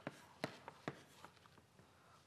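Writing on a board during a pause in working out a calculation: a few faint, sharp taps about half a second apart in a small room.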